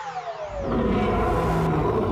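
Cartoon sea-monster roar, a low rumbling growl that starts about half a second in, just after a falling whistle-like tone dies away, with background music under it.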